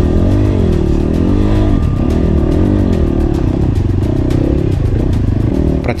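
A ZUUM CR300NC enduro motorcycle's single-cylinder engine revving up and down under throttle, its pitch rising and falling about once a second, as the bike climbs a slippery rocky stream bed. Stones clatter now and then under the tyres.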